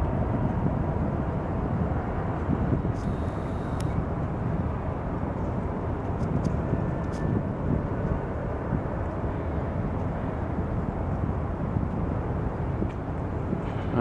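Steady low rumble of outdoor background noise, with a few faint clicks in the first half.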